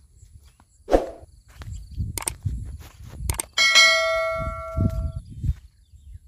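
Subscribe-button end-screen sound effects: a few sharp clicks, then a single bright bell ding a little past the middle that rings for about a second and a half. A low rumble runs underneath.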